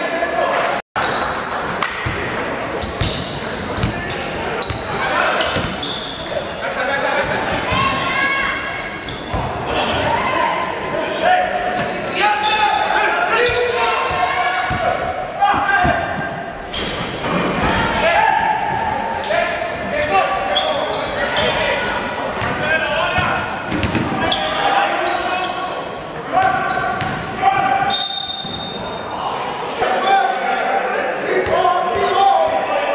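Sound of a basketball game in a gym hall: players and spectators calling and talking over one another, with the ball bouncing and thudding on the wooden court. The sound cuts out for a moment about a second in.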